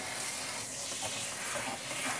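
Handheld sink sprayer running a steady spray of water onto a wet puppy's coat in a utility sink.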